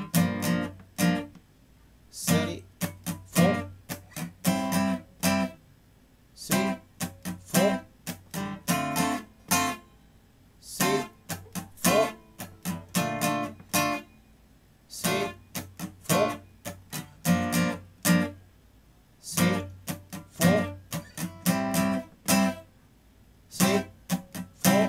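Gibson J-45 steel-string acoustic guitar strummed with a pick in a syncopated pattern that mixes ringing chord strums with muted scratch strokes, moving through BbM7, Gm7, Am7 and Dm7. The strumming comes in bar-long phrases separated by brief pauses.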